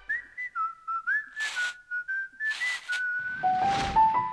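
A short whistled tune of stepping, sliding notes in a studio logo sting, with two quick whooshes in the middle. Near the end it drops to lower, held notes.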